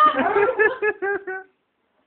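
A person laughing hard in a quick run of rhythmic, high-pitched pulses that stops about one and a half seconds in.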